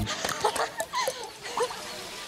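Several short animal calls, yelps that rise and fall in pitch, in quick succession just after the music cuts off.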